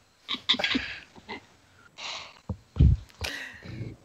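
Quiet, breathy laughter from a few people over a voice call through headset microphones: short puffs and snickers, with one louder burst about three seconds in.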